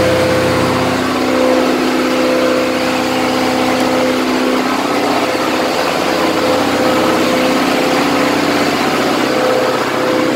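Engine running steadily in a boat's engine room, a loud, constant drone with a steady hum.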